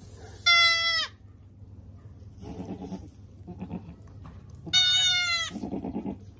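Young goat kid bleating twice: two high, clear cries, the second one longer, each dropping slightly in pitch at the end. Quieter rustling is heard between the cries.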